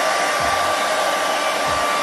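Handheld hair dryer running steadily on hair, a loud rush of blown air with a thin steady whine from its motor.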